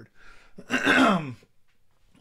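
A man clearing his throat once, a rough vocal sound that falls in pitch and lasts under a second.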